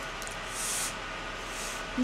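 Two short, breathy puffs of air from a person eating, about a second apart, over steady background hiss.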